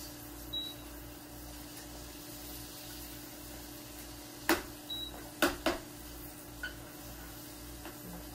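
A metal spoon clinks sharply against a frying pan three times: once about halfway through, then twice close together a second later. This happens while hot butter is spooned over a frying egg. Under it runs a steady sizzle of foaming butter and a low hum.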